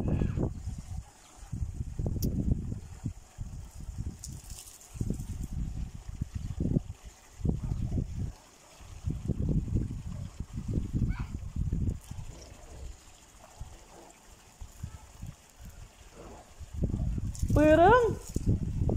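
Wind gusting on the microphone in repeated low rumbles, over a faint trickle of irrigation water running along a dug earth channel. A voice calls out, rising in pitch, near the end.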